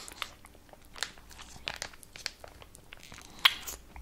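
Soft mouth sounds and small crinkles of a plastic fruit-purée squeeze pouch being sucked and squeezed, with scattered faint clicks and one sharper click about three and a half seconds in.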